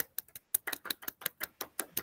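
A few people clapping over a video call, heard as a quick, irregular run of sharp claps.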